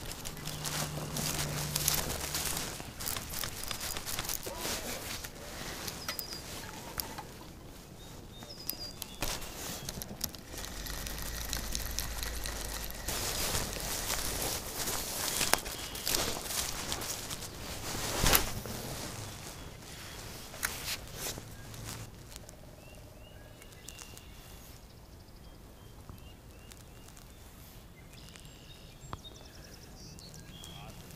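Footsteps and rustling through dry grass, with clothing rubbing close to a chest-mounted camera. The rustling is busiest over the first twenty seconds, then dies down to quieter handling.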